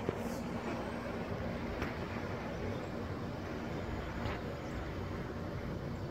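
Steady distant city traffic noise, a low even rumble with a few faint clicks.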